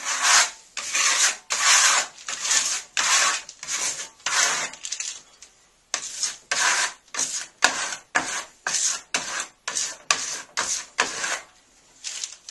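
Trowel rubbing and scraping over a dried Venetian plaster wall in quick repeated strokes, about two a second, with a short pause about five seconds in: soap being worked into the Marble Stone finish to seal and polish it.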